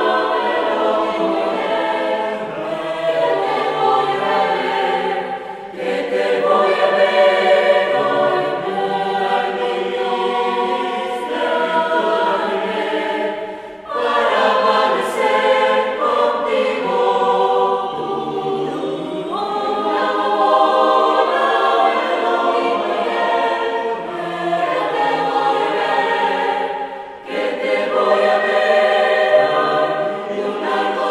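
Mixed choir of men's and women's voices singing unaccompanied in parts, with brief breaks between phrases about six, fourteen and twenty-seven seconds in.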